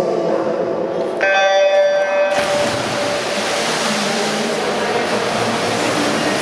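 Electronic race-start signal: a bright buzzing tone lasting about a second, starting about a second in. Right after it, a steady rush of splashing as the swimmers dive in and start racing.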